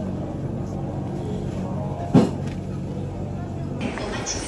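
Restaurant background: a steady low hum with the murmur of other diners' voices, and one sharp click about two seconds in.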